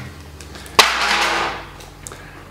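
A single sharp knock about a second in, followed by a rustling noise that fades away over about a second, as something is handled close to the microphone.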